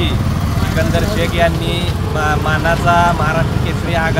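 A man speaking, mostly in Marathi, over a steady low background rumble.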